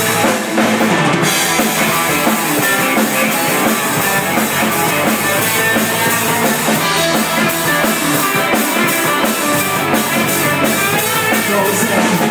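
Live rock band playing an instrumental passage: electric guitars over a drum kit, loud and steady, with cymbal strikes near the end.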